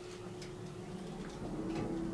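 Elevator cab machinery humming steadily, its tone dipping slightly about one and a half seconds in, with a few faint clicks, as the car gets under way after the floor-4 button is pressed.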